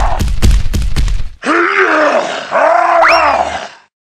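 A deep, cartoonish monster groaning and grunting in a loud dubbed voice, with a clatter of sharp knocks in the first second and a half. Then come two long groans that rise and fall in pitch, and a high whistling glide cuts in near the end of the second.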